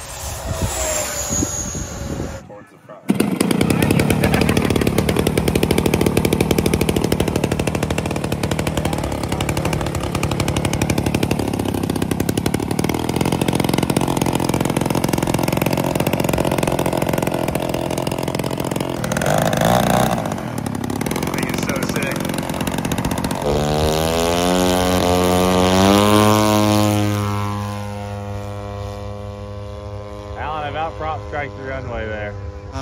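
Large-scale radio-control P-51 Mustang model's propeller engine running steadily, then throttled up from about twenty-four seconds in, its pitch climbing as it takes off. Before that, in the first couple of seconds, the whine of a model jet flying past fades out.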